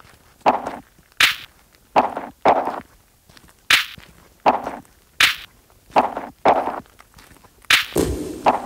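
Sparse percussive hits in an electronic music track: about ten short, sharp strikes in an uneven rhythm, some brighter and some duller, with near quiet between them.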